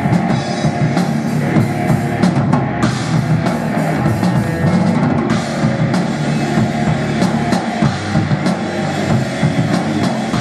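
Live rock band playing an instrumental passage: electric guitars and drum kit, with steady drum hits and no vocals.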